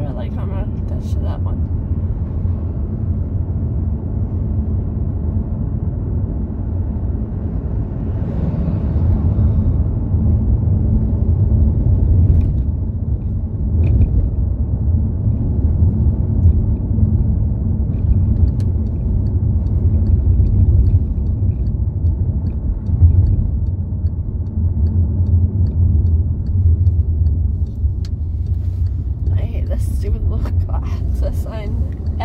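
Steady low rumble of road and engine noise heard inside a moving car's cabin. A faint, evenly spaced ticking runs through the second half.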